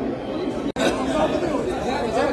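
Overlapping chatter of several people talking at once, with no clear words; it drops out for an instant about three quarters of a second in, where the recording is cut.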